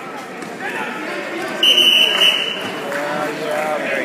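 A buzzer sounds once, a loud, steady, high tone lasting about a second, a little under two seconds in. Spectators' voices call out around it.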